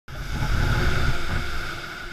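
Naviator multirotor drone hovering, its electric motors and propellers giving a steady high whine over an uneven low rumble.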